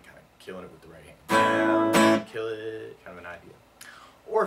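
Steel-string acoustic guitar strummed through chord changes, soft at first, with the loudest full strums a little over a second in, lasting nearly a second, then softer strumming again.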